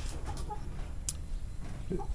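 A chicken clucking faintly a couple of times, with one sharp click about a second in.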